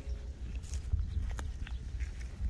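Dry grass stalks and crumbly soil crackling and rustling as a rubber-gloved hand grips and pulls weeds, with a few sharp clicks over a low rumble.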